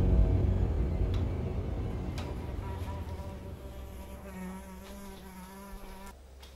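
A deep rumble fades out, and from about two-thirds of the way in a fly buzzes with a wavering hum. A few faint clicks are heard.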